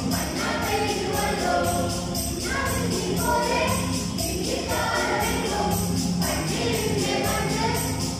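Mixed choir of women, girls and men singing a Malayalam Christmas carol in harmony, over an instrumental accompaniment with a steady jingling percussion beat.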